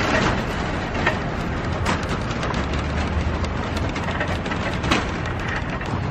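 Shopping cart wheels rolling across parking-lot asphalt, a steady rattling rumble with a few sharp clacks from the cart.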